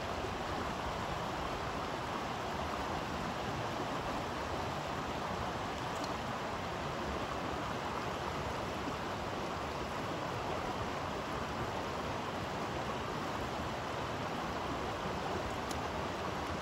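Small mountain stream running over rocks: a steady, even rush of flowing water.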